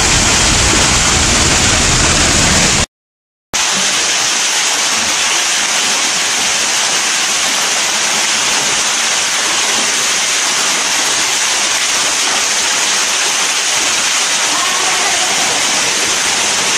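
An underground waterfall pouring down the cave shaft, a loud, steady, hissing rush of water. The sound cuts out completely for about half a second around three seconds in.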